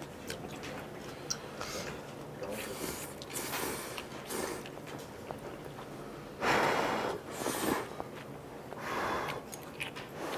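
People slurping and chewing instant ramen noodles: several short noisy slurps and sniffs between quieter chewing, the loudest about six and a half seconds in.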